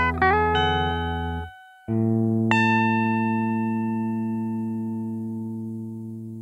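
Cort electric guitar playing the closing melody notes, with bends, over a sustained backing track. The music cuts off briefly about a second and a half in; then a final chord comes in and a single held guitar note rings and slowly fades as the song ends.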